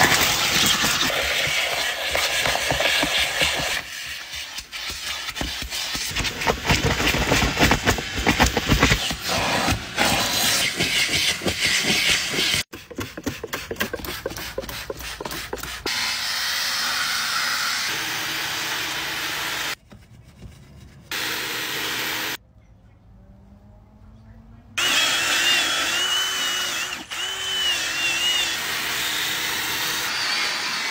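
A run of car-interior cleaning machines in short cuts: a vacuum sucking debris off floor carpet, a cordless drill spinning a scrub brush on a cloth seat, and an upholstery extractor running, with a wavering whine in the last few seconds.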